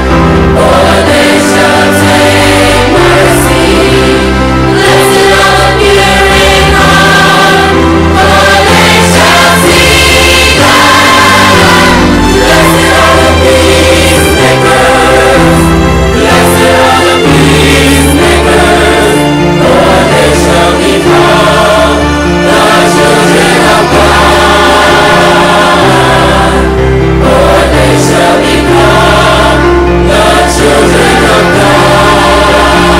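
Gospel choir music: voices singing together over a steady bass line, loud throughout.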